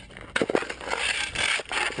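Shovel blade chipping and scraping at thick driveway ice: a sharp hit about a third of a second in, then a run of rough scrapes as the blade works across the ice.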